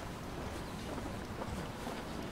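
Steady low rumble of outdoor street ambience, with wind noise on the microphone and a few faint ticks.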